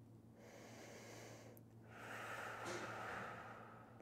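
A man's quiet, audible breathing: a breath of about a second, a short pause, then a longer, louder breath, following the archer's set-position breath cue of in, then out.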